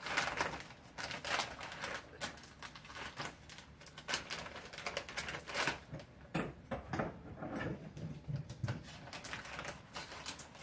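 A bag of stuffing mix being worked open by hand, its material crinkling and rustling in irregular sharp crackles.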